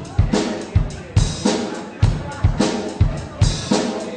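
Drum kit playing a steady beat, bass drum and snare hits in a regular groove, with the rest of a live rock-blues band underneath.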